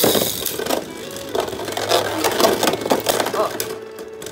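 Lego Beyblade spinning tops weighted with metal nuts, hitting the plastic stadium floor and then clashing and rattling against each other and the stadium wall in rapid, irregular clacks, over background music.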